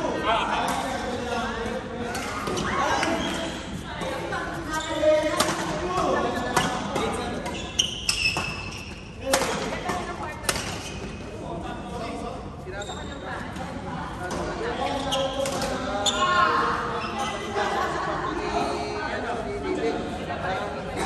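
A badminton doubles rally in a large, echoing sports hall: a series of sharp racket strikes on the shuttlecock at irregular intervals, with the loudest hits around the middle. Players' voices and chatter from the hall carry on underneath.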